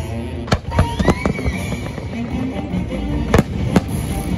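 Fireworks shells bursting with sharp bangs: one about half a second in, two close together around one second, and the two loudest near the end. A music soundtrack plays steadily underneath.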